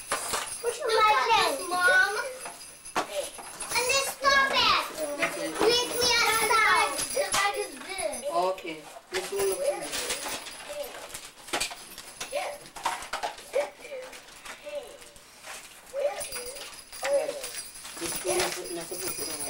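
Children's voices chattering and calling out, high-pitched and loudest in the first seven seconds or so, then quieter talk for the rest.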